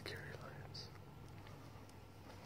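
Whispered speech: a breathy "oh" that fades out, then a short breath, over a low steady hum.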